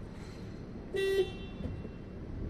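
A car horn tooting once, briefly, about a second in, over the low rumble of idling traffic heard from inside a car.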